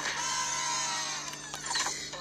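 Whirring of a Woody doll's pull-string voice-box mechanism, slowly falling in pitch and fading out.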